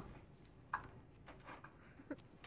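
Mostly quiet room with a few faint, short clicks and taps.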